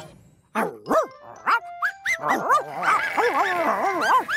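Cartoon sheepdog barking, a quick run of short rising-and-falling barks that starts about half a second in, with light background music.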